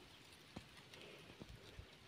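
Near silence: faint outdoor hiss with a few soft, short knocks at uneven spacing, about half a second in and three more in the second half.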